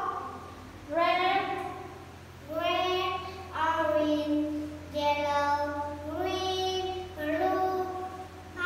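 A young girl singing a children's song unaccompanied, in a string of short phrases of held notes.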